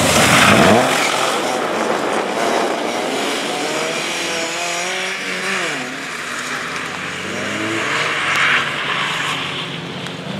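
BMW E30 rally car's engine revving hard as the car passes close by, its note dropping as it goes past, with water hissing off the tyres on wet tarmac. The revs then rise and fall as the driver works the throttle through a turn, with another short burst of spray about eight seconds in.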